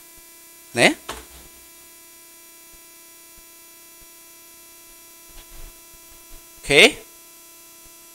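A steady electrical hum with several evenly spaced overtones, picked up by the recording. Two short voice sounds cut in, about a second in and near seven seconds.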